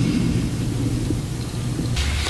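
Steady low rumbling background noise with a low hum under it.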